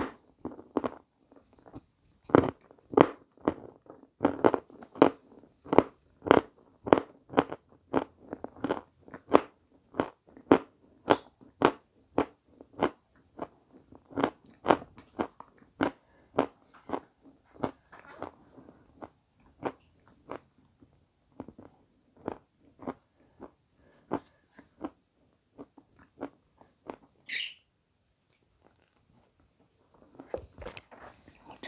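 A person chewing food close to the microphone with the mouth closed, a steady run of about two chews a second that thins out and stops near the end, with one brief sharper mouth sound just before it stops.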